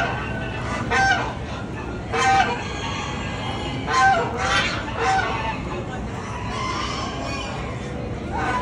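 Domestic waterfowl in a poultry barn calling: about six short, harsh nasal honks, roughly a second apart, stopping about five seconds in, over a steady din of other poultry.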